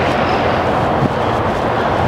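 Steady engine noise from a truck towing a trailer loaded with a mini excavator as it drives slowly past.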